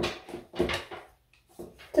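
A flat iron being handled while curling a strand of hair: a sharp click at the start, then soft rustling of hair against the iron that fades to near quiet, with faint handling noise again near the end.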